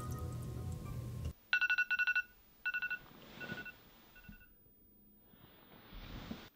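Smartphone alarm going off in short pitched beeps: two loud clusters, then fainter repeats. Before it, a steady low sound cuts off abruptly just over a second in, and a soft rustle follows near the end.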